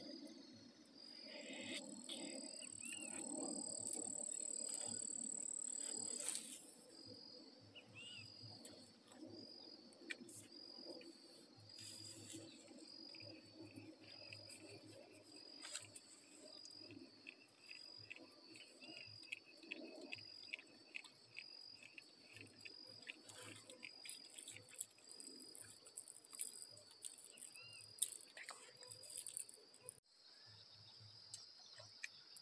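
Insects calling in lakeside grass: a high chirp repeats about once a second, with a high steady buzz for a few seconds near the start. A single sharp click comes near the end.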